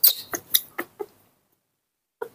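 Baby monkey giving a quick series of short, high squeaks, about five in the first second, then falling silent: calls of impatience while its milk is being poured.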